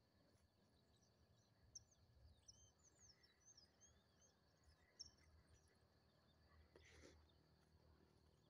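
Near silence: faint outdoor ambience with a few distant high bird chirps and a faint steady high insect drone.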